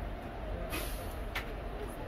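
A steady low rumble with a short hiss a little under a second in and a sharp click just after.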